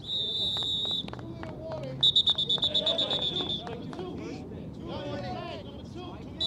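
Referee's whistle: a steady blast of about a second, then a second later a louder, trilling blast of about a second and a half, with players' voices shouting underneath.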